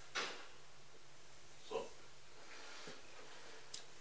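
A man's short, breathy snort-like exhale just after the start, then a quiet spoken "so" and low room tone.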